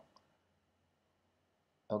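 Near silence with a single faint click shortly after the start. Speech ends just as it begins and resumes near the end.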